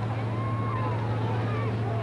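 Large bonfire of Christmas trees burning with a steady rushing noise, faint crowd voices over it, and a steady low hum underneath.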